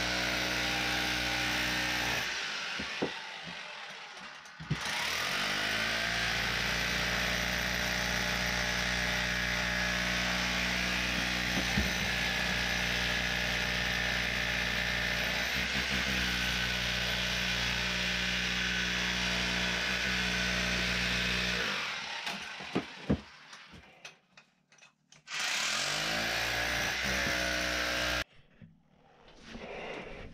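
A hand-held power tool working the rock face, running at a steady pitch. It winds down about two seconds in and spins back up near five seconds. It stops at about 22 seconds, runs again for about three seconds, then cuts off.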